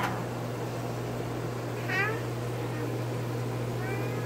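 A toddler's short high-pitched squeal, falling in pitch, about halfway through, and a fainter one near the end, over a steady low hum.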